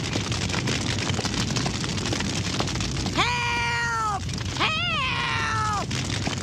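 Steady rushing, crackling noise of a cartoon house fire, with two high, drawn-out cries from a voice about three and five seconds in, each about a second long and falling in pitch at the end.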